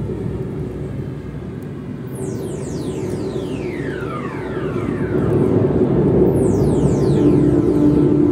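Ambient synthesizer music: a dense low rumbling drone with clusters of high sweeps gliding down in pitch, twice, a few seconds apart. A steady held tone comes in near the end.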